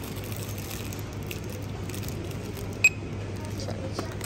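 Supermarket background noise with a steady low hum, and one brief, sharp, high-pitched ping about three seconds in.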